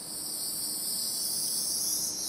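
Cold helium gas hissing steadily out of the open end of a liquid-helium transfer line as the line is purged and pre-cooled in the storage dewar, slowly growing louder.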